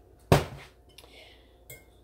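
A single sharp clatter of kitchenware, a dish or utensil set down hard on the counter, about a third of a second in, followed by a couple of light clinks.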